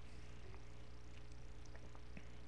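Steady low hum with a faint electrical whine and a few faint ticks: background noise of the recording setup.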